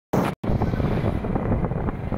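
Yamaha motorbike riding along a road: a steady low engine and road rumble mixed with wind buffeting the microphone. The sound cuts out for a split second just after it starts.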